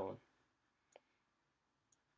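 Two faint computer mouse clicks about a second apart, the first the louder, in near silence.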